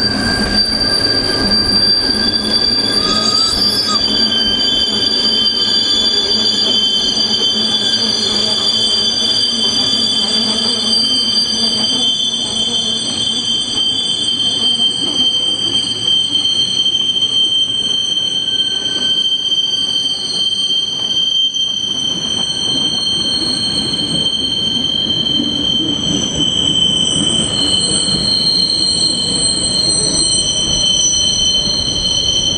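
Steel wheels of a Rhaetian Railway train squealing on a tight curve of the Bernina line: several high, steady squeal tones that shift in pitch now and then, over the rumble of the running gear.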